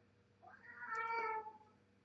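A cat meowing once, a drawn-out call of about a second starting about half a second in.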